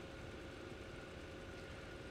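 Faint, steady mechanical hum with a couple of thin steady tones running through it.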